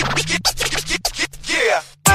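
DJ scratching in a dance mix: quick scratch strokes over a held bass note that slides slowly down, ending in a few downward sweeps as the sound fades near the end.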